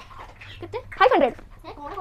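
A brief, high-pitched whine-like vocal sound about a second in, falling in pitch, with a few faint fragments of voice around it.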